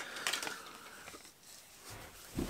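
A house of playing cards collapsing onto a wooden tabletop: a sharp click, then a quick patter of light card clicks and slaps that dies away within about a second.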